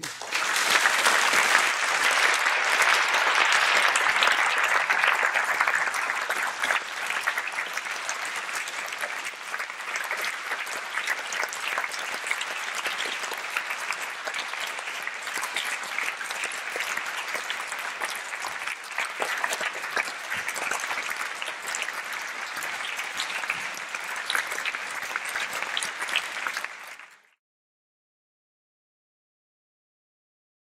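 Audience applauding, breaking out suddenly at full strength, easing a little after about six seconds and then going on steadily until it cuts off shortly before the end.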